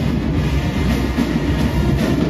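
Marching band playing loudly: brass led by sousaphones, over steady drum-line hits.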